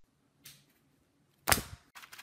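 A single sharp knock or slap about one and a half seconds in, with a faint click before it and a smaller one near the end.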